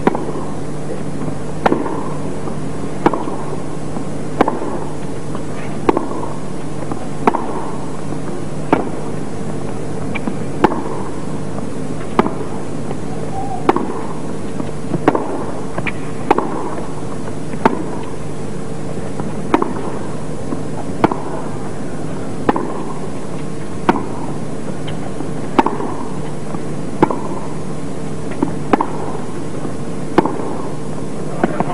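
Tennis balls struck by rackets in a baseline rally on a hard court: a sharp pock about every second and a half, over a steady low hum.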